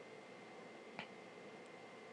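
Near silence: faint room tone with a thin steady high whine and a single soft click about a second in.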